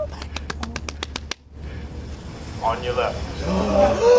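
Radio static crackling in an earpiece, a rapid run of clicks about ten a second that cuts off suddenly about a second and a half in. A thin, tinny voice comes over the radio near the end.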